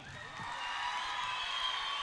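Audience applauding and cheering, swelling about half a second in, with a few faint held high tones over it.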